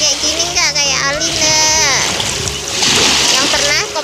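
Shallow seawater splashing around a small child wading in the shallows, with a louder wash of splashing from about two seconds in to just past three.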